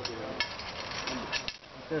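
A few sharp metal clicks and knocks as a metal prop bar is slid into its clamp fitting on a tunnel hoop.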